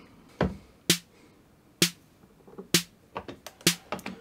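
Behringer RD-8 analog drum machine sounding single short, sharp hits at uneven intervals, about seven of them, as steps of a basic pattern are entered and the sequence is started.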